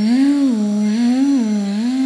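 A woman humming a wavering tone that rises and falls in smooth, repeated swells, imitating the drone of a vacuum cleaner.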